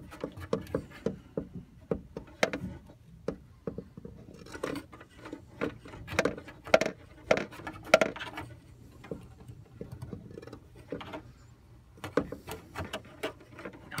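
Irregular light taps, knocks and scrapes of a plastic cup and camera bumping against the wooden sides of a narrow wall cavity, with a few sharper knocks among them.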